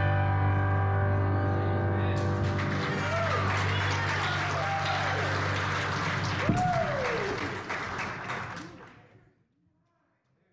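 A grand piano's final chord ringing out, then the congregation applauding from about two seconds in, with a few whoops and cheers. The applause fades away near the end.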